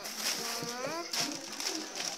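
A young child's voice making drawn-out, wordless vocal sounds whose pitch slides upward in the first second, followed by softer, broken voice sounds.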